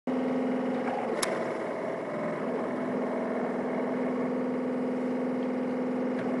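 A steady droning hum with a strong low tone and evenly spaced overtones, and a single brief click about a second in.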